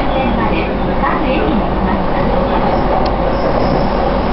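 Steady running noise inside a JR East E233-1000 series electric train's motor car under way: wheels on rail and traction equipment, with voices over it.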